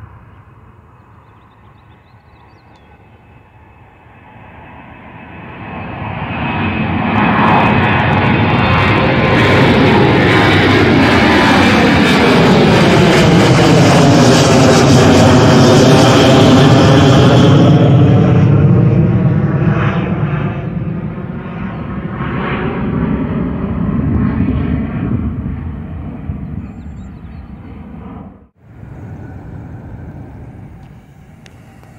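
Boeing 737 jet airliner passing low overhead. Its engine noise swells over several seconds, stays loud for about ten seconds with a sweeping, whooshing shift in tone as it goes over, then fades away. The sound cuts off abruptly near the end.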